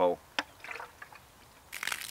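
A single click about half a second in, then, near the end, a hissing stream of rinse water pouring out of a Lifesaver Cube water purifier's pump hole and splashing onto grass.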